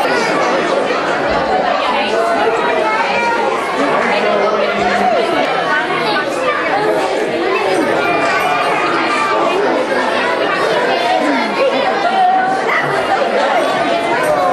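Many voices chattering at once in a large room, a steady hubbub of overlapping talk with no single speaker standing out.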